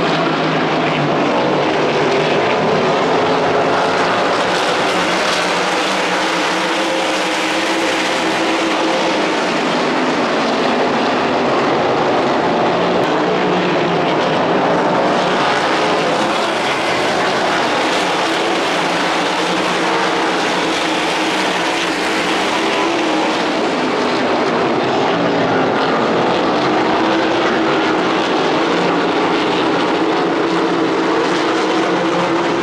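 Loud, continuous engine drone that swells and eases every ten seconds or so.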